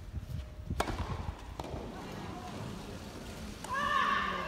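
Tennis racket striking the ball: a sharp pop of the serve about a second in, and a fainter hit of the return just under a second later, over low crowd murmur.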